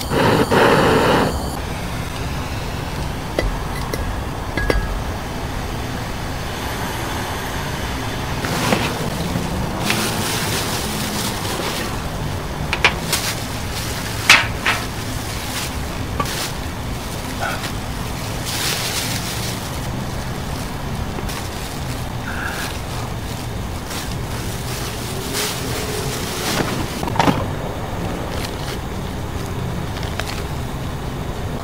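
A brief loud hiss as a lighter flame is lit, then scattered rustles and clicks of a plastic bag being handled, over a steady outdoor background rumble.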